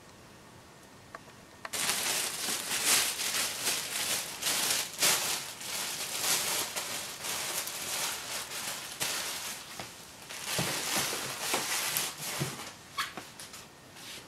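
Plastic packaging crinkling and crumpling: a dense rustle full of sharp crackles that starts abruptly about two seconds in and runs until near the end, thinning out over the last couple of seconds.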